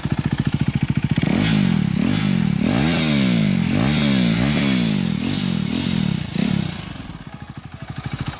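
KTM RC 390's single-cylinder four-stroke engine running through an SC-Project slip-on exhaust, loud. It idles with an even beat, then about a second in it is revved up and down repeatedly for several seconds, and it settles back to idle near the end.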